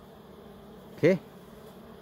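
Steady hum of a large cluster of dwarf honey bees (Apis florea) massed on their single open comb.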